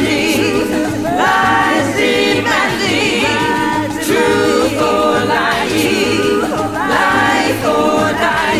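All-female a cappella vocal ensemble singing held chords in several parts, in repeated rising and falling phrases, over a steady low pulse about twice a second.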